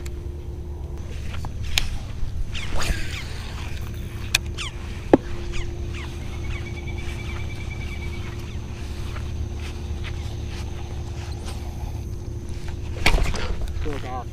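Handling noise from a fishing rod and baitcasting reel held close to the microphone, over a steady low outdoor rumble: scattered sharp clicks and knocks, a short run of fast even ticking midway, and a louder burst of rustling and clatter near the end.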